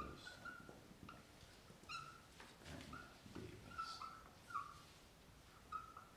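Marker squeaking against a writing board in a string of short, faint strokes as words are written out.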